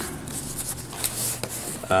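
Cardboard rubbing and scraping as an inner box is slid by hand out of its printed cardboard sleeve.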